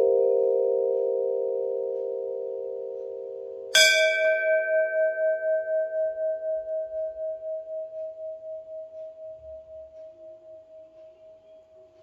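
Large brass temple bell struck with a beater: the ringing of one strike fades away, then a second strike about four seconds in rings out long and dies away slowly, wavering with about three beats a second.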